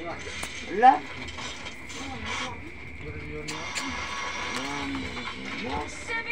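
Rustling and crinkling of gift wrapping and cloth as a dark garment is pulled out and handled, with a denser stretch of rustling in the second half.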